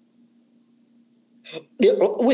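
A pause in a man's lecture: near silence with a faint steady hum, then a short vocal sound and his voice starting up again near the end.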